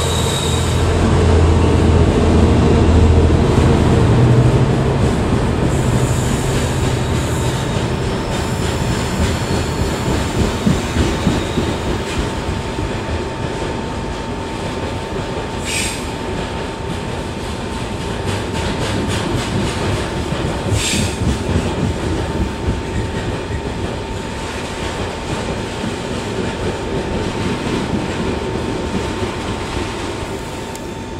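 A freight train of open engineers' wagons rolling past on jointed track, with the deep rumble of its Class 66 diesel locomotive loudest in the first few seconds as it moves away. After that comes a steady rolling clatter of wagon wheels, a thin steady whine, and two short high squeals of the wheels about halfway through.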